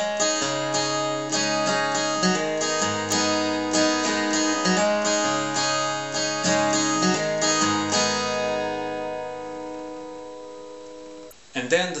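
Acoustic guitar, capoed at the fourth fret, fingerpicked: a run of plucked notes over a repeating bass for about eight seconds, then a last chord left to ring and fade before it is damped near the end.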